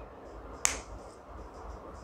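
A single short, sharp click about two-thirds of a second in, over a faint low background hum.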